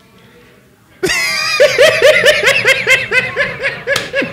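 Several men laughing together, starting about a second in after a short quiet pause, in quick repeated ha-ha pulses.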